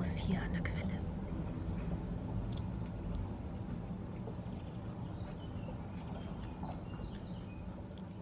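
Fountain water running steadily, a constant even flow that eases off a little over the seconds.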